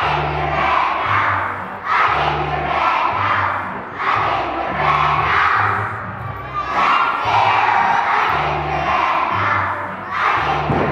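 A large group of young children singing together loudly over an accompaniment with held bass notes, in repeating phrases about two and a half seconds long.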